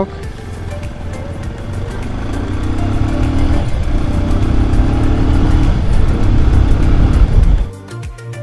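Motorcycle running on the road, with engine and road noise growing louder as the bike picks up speed, then cutting off suddenly near the end.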